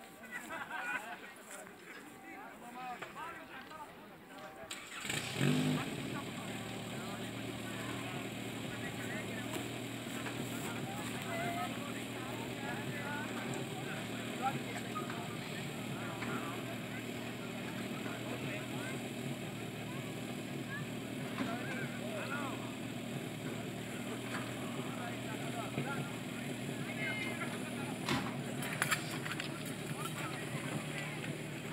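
Portable fire pump engine catching about five seconds in and then running steadily under load, with voices and shouts over it.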